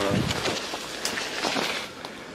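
Leafy shrub branches rustling and brushing as someone pushes through them, with a few short crackles.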